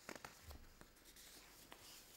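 Near silence: faint room sound with a few soft clicks and rustles, the light scratch of a pen writing on paper.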